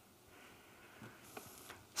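Quiet room tone in a large hall with a few faint clicks in the second second.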